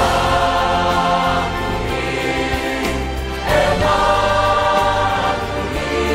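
Mixed choir of men's and women's voices singing in harmony over a sustained low accompaniment. A new, louder phrase begins about halfway through.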